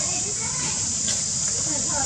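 Steady high-pitched drone of insects, with faint distant voices.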